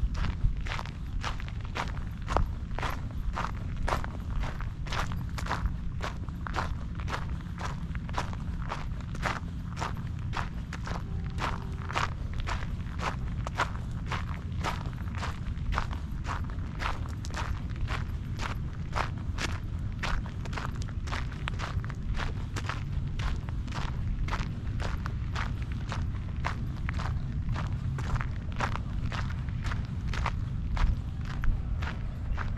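Footsteps on a gravel trail at a steady walking pace, about two steps a second, over a steady low rumble.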